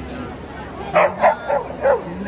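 A dog barking four times in quick succession, starting about a second in.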